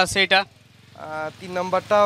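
Speech: a voice talking, broken by a pause of about half a second near the middle.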